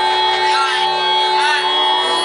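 Loud live amplified music with electric guitar: steady held tones under short arching high notes that rise and fall twice.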